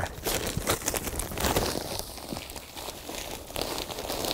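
Plastic bag of seed raising mix crinkling as it is handled and tipped, with the potting mix pouring into a plastic pot. The crinkling is continuous and irregular.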